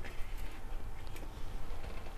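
Quiet background noise with a steady low rumble and a few faint light clicks.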